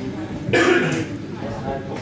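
A person coughing close to the microphone, a loud burst of about half a second starting about half a second in, with brief talk around it.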